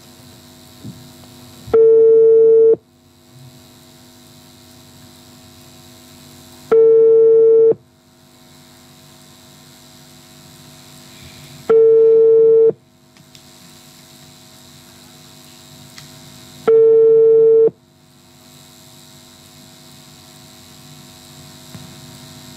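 Telephone ringback tone over the studio phone line: four one-second steady beeps, one every five seconds, as an outgoing call rings unanswered, with faint line hiss between the rings.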